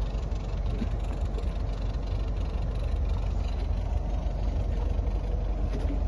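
Motorboat engine running at low speed as the boat moves slowly alongside another: a steady low hum with an even wash of noise over it.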